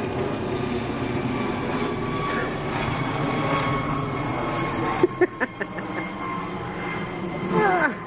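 A helicopter flying overhead: a steady drone. A few sharp clicks come about five seconds in, and a short laugh comes near the end.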